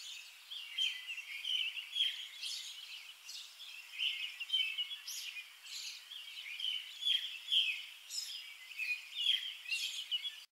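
Small birds chirping outdoors, a busy run of short overlapping calls.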